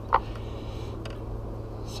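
Small screwdriver tip flicking DIP switches on a Winegard satellite's circuit board: a sharp click just after the start and a fainter one about a second in, over a steady low hum.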